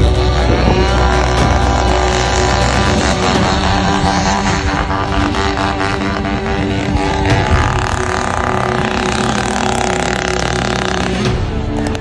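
Beta 50cc two-stroke enduro motorcycle engine revving up and down as the bike rides the course, with background music mixed over it.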